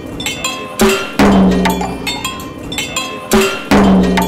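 Wind-driven percussion sculpture, its turning rotor swinging beaters against a drum, a cowbell and a cymbal: irregular metallic clanks and clinks throughout, with two pairs of deep drum hits that ring on, about a second in and again near the end.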